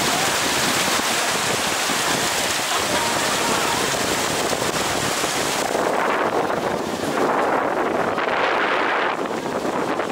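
Wind buffeting the microphone of a camera on a boat underway, over a steady rush of water past the hull. About six seconds in, the hiss loses its top and turns gustier.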